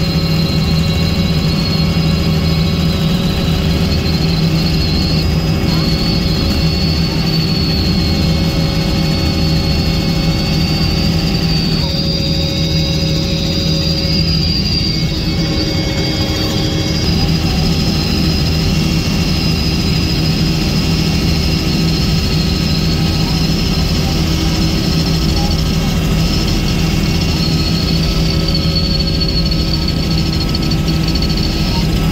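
Helicopter in flight, heard from inside the cabin: a steady loud drone of engine and rotor with a thin high whine that drifts slowly up in pitch.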